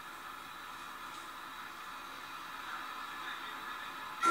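Low, steady hiss of background noise, with no distinct sound event.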